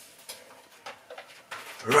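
Faint clicks and rustling of things being handled in a kitchen as a plastic tub is picked up, a few light knocks scattered through. A man's voice starts near the end.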